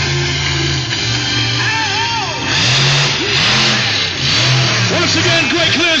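Monster truck engine revving hard in repeated rising and falling surges as it accelerates on its run-up to a jump, loudest from about two and a half seconds in, with rock music from the arena PA underneath.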